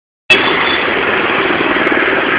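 Busy road traffic: a steady din of vehicle engines running and passing, starting abruptly just after the beginning.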